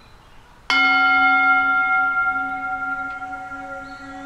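A single bell-like strike about a second in, ringing with several steady tones and slowly fading. Faint background noise underneath, with a short chirp near the end.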